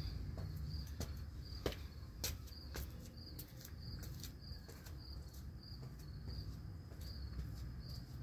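Crickets chirping in a steady pulsing rhythm, a high chirp about every two-thirds of a second, over a low outdoor rumble. A few sharp knocks about two seconds in come from shoes stepping on concrete steps.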